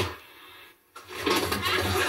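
Sitcom studio audience laughing, swelling in about a second in after a brief drop to near silence and carrying on steadily.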